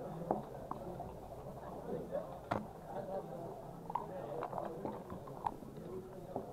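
Backgammon checkers clicking down on the board as a move is played: a few separate sharp clicks, the loudest about halfway through, over a steady murmur of background talk.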